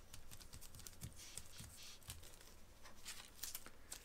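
Faint, irregular rustling and crinkling of wax paper as hands press and tidy a thin raw beef patty on it, with a few soft taps.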